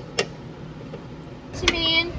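Two sharp metallic clicks a fraction of a second apart, from a small wrench working the bleeder screw on a drum-brake wheel cylinder, then a short pitched call near the end.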